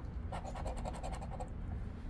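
A round poker-chip-style scratcher scraping the coating off a lottery scratch-off ticket in a quick run of strokes, about ten a second for about a second, uncovering a number spot.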